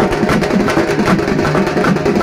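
Loud, drum-driven music with fast, dense drumbeats playing steadily throughout.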